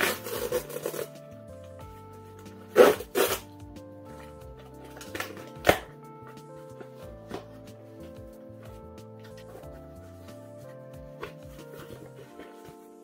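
Cardboard book mailer being torn open along its tear strip and its flaps pulled apart: a ripping burst at the start, two more around three seconds in, and a sharp crackle near six seconds, with a few small rustles after. Soft background music plays throughout.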